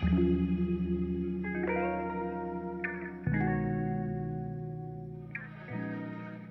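Instrumental music without vocals: a guitar played through effects holds slow, sustained chords, moving to a new chord every couple of seconds.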